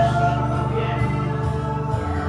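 A live church worship band playing a gospel song: held sung notes over guitar accompaniment.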